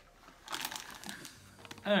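A plastic candy wrapper crinkling as it is handled, for about a second.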